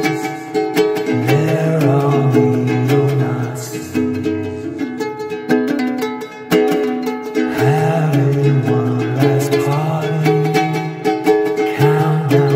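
Ukulele strummed in a steady rhythm, playing an instrumental passage of a song. A low, sustained bass line runs under it and drops out for a few seconds in the middle.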